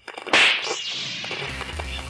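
A segment-transition stinger: a sharp whip-crack whoosh sound effect about a third of a second in, trailing off, followed by a short musical jingle with low bass notes.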